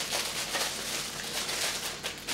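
Thin cellophane plastic wrap crinkling as it is peeled by hand off a VHS tape box.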